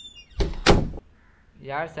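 Wooden door being pulled open: a brief faint high squeak, then two loud knocks about a third of a second apart as the door and its fittings bang.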